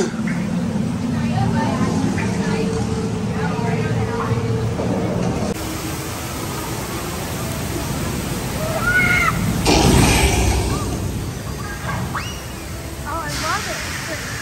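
A steady low hum for the first few seconds, then a sudden change to outdoor log-flume water running down the chute. A loud surge of rushing water comes about ten seconds in, with faint voices around it.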